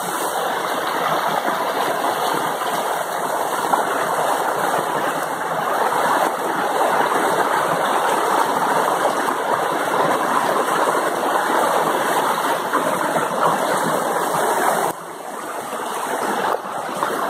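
Rocky mountain stream rushing over boulders and small cascades: a steady, dense rush of water that drops abruptly quieter about a second before the end.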